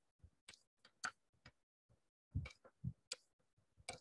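Faint, irregular clicks and soft knocks, a few each second.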